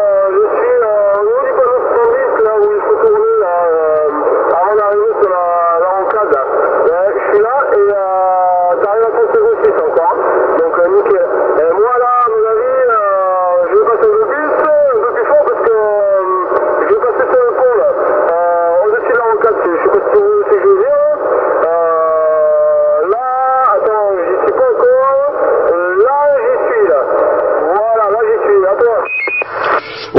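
Another station's voice coming in over a 27 MHz CB radio on single sideband (USB), heard through the set's speaker: continuous talk with a thin, narrow sound, no deep or high tones. The signal is strong and fully readable, reported as radio 5, Santiago 8.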